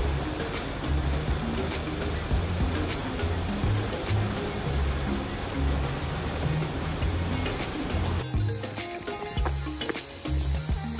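Water rushing over rocks in a small stream cascade, a steady wash of noise, with background music whose bass line pulses underneath. About eight seconds in the water sound cuts off and a steady high chirring of forest insects takes over, the music continuing.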